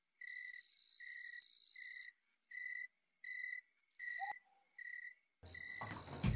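Crickets chirping in a steady, regular pulse a little over once a second. Near the end a louder rushing noise with a low rumble comes in over them.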